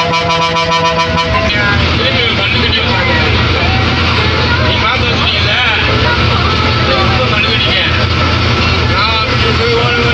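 A bus engine drones steadily from the cabin at highway speed, with voices over it. A held, pulsing pitched tone sounds in the first second or so.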